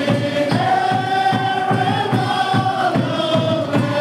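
A group singing a worship song together over a steady low beat of about three strokes a second, with long held notes.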